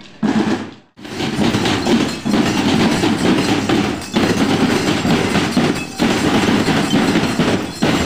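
A children's marching drum band playing its drums loudly as it marches, with a brief break just before a second in before the drumming picks up again.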